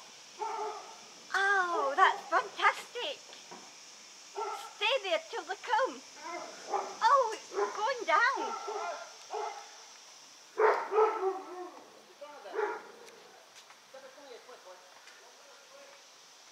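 A dog barking and whining in short bursts, on and off, with pauses between the clusters of calls.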